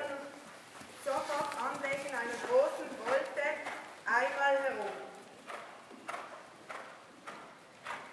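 A horse's hoofbeats on the sand footing of an indoor riding arena, an even stride rhythm of soft strikes about every half second that is clearest in the second half. A person's voice sounds over it in the first half.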